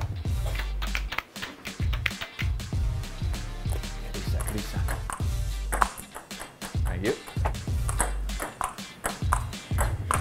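Ping-pong ball clicking off paddles and the table in a fast back-and-forth rally, over background music with a steady bass line.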